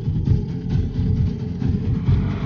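Low, rumbling, pulsing suspense music from a TV serial's background score.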